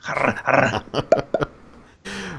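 Breathy, wheezy laughter from a man: a few noisy bursts, then short squeaky gasps about a second in, trailing off.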